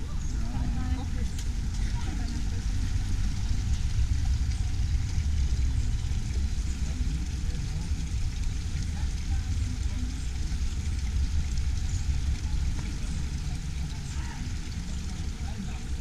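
Outdoor ambience on a walking camera: a strong, uneven low rumble throughout, with faint, scattered voices of people nearby.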